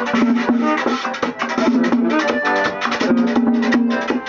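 Accordion playing a quick melody with chords, over a steady beat of drum and shaker-like percussion.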